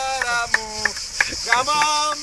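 A man laughing and calling out in short bursts, over a steady high-pitched chorus of insects, likely cicadas.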